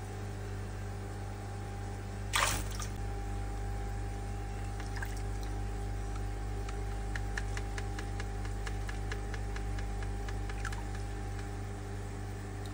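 Water sounds in a koi holding tank: one short splash about two seconds in, then a run of small drips and clicks at the surface where the koi swim, over a steady low hum.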